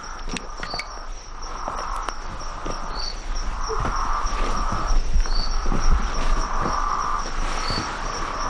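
Night insect chorus: crickets trilling in a steady, fast pulsing rhythm, with a short higher chirp repeating about every two seconds and a lower buzzing chorus that swells and grows louder. Scattered light clicks and rustles sound under it.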